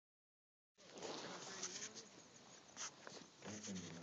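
Faint rustling and clicking from a handheld camera being moved, with a brief murmur of a voice near the end.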